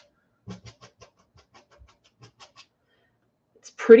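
Faint, scattered soft taps of a small paintbrush dabbing acrylic paint onto a stretched canvas, several light strokes in the first couple of seconds, then a woman's voice near the end.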